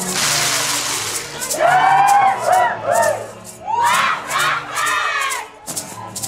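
Festival dancers shouting high, gliding whoops and cries in two rounds, over quieter band music. A loud hissing rattle-like burst comes first.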